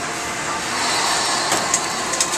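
Steady rushing noise of a commercial kitchen's ventilation, with a few light clicks near the end.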